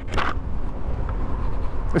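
Steady wind and road rumble of the Maeving RM1 electric motorcycle riding at about 40 mph at full power, a low even noise with no engine note, carried on the bike-mounted microphone.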